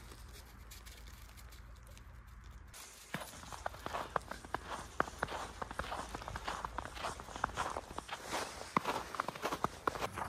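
Footsteps crunching on a thin layer of fresh snow over a gravel towpath, starting about three seconds in as an uneven run of short, crisp crackles.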